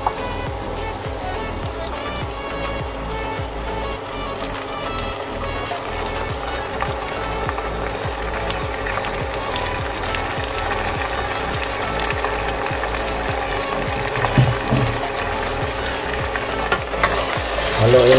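Raw quail pieces frying in hot oil in a stainless-steel pot with sautéed garlic, onion and ginger: a steady sizzle.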